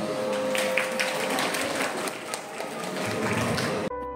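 Audience applauding, with a steady held note sounding under the clapping. The applause cuts off abruptly just before the end.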